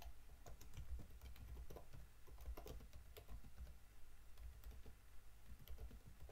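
Computer keyboard typing: a faint, irregular run of keystrokes.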